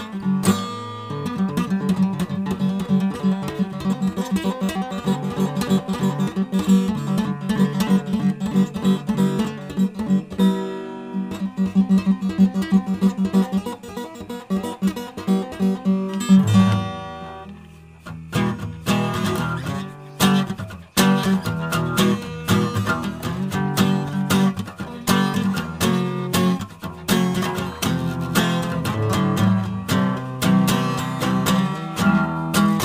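Guitar music: quick plucked notes over a steady bass line, which drops away briefly about two-thirds of the way through, then picks up again.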